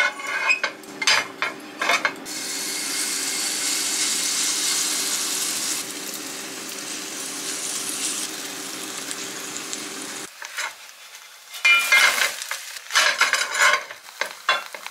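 Oat batter sizzling in hot olive oil in a non-stick frying pan. A silicone spatula scrapes and taps the pan at the start, then the sizzle sets in about two seconds in, loudest early and dropping away around ten seconds. A few more sharp scrapes and knocks on the pan come near the end.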